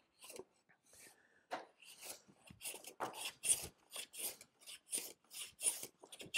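A No. 5 hand plane taking quick repeated shavings from a glued-up cherry panel, worked at a diagonal to flatten its high spots. The soft rasping strokes come faster and more evenly in the second half, about three a second.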